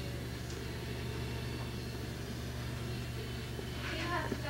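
A steady low hum with faint hiss and no distinct events, with one faint click about half a second in.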